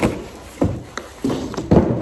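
Cardboard box being opened and its contents pulled out: a few knocks and rustles of cardboard and plastic wrap, with a longer rustling scrape near the end.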